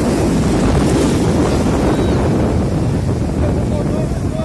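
Loud, steady wind buffeting the microphone over the wash of breaking surf.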